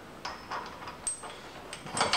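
A handful of light metallic clicks and taps as a 27 mm steel bolt and its washers are fitted through the tractor's tow-hitch clevis and brace bar, one tap about a second in leaving a brief high ring.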